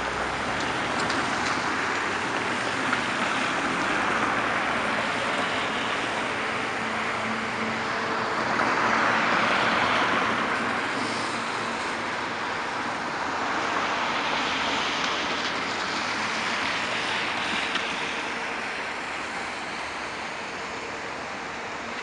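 Road traffic: cars driving past one after another, their tyres hissing on wet, slushy pavement, the sound swelling and fading as each goes by.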